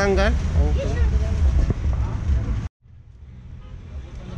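Voices in the first second over a steady low rumble of road traffic. The sound cuts off abruptly about two-thirds of the way through, and a quieter low background follows.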